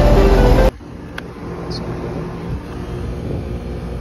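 Intro music that cuts off abruptly under a second in, followed by a 2009 1.5-ton Trane XB13 outdoor unit running with a steady low hum, quiet. A single short click comes just over a second in.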